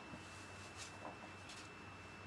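Faint, soft rustling of thin silk voile fabric being handled and pulled out while it is measured, over a low steady hum and a thin steady high tone.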